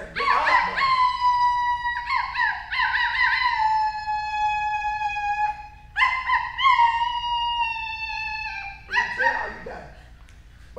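A woman imitating a dog, howling in long, high drawn-out howls that each slide slightly down in pitch, several in a row with short breaks between.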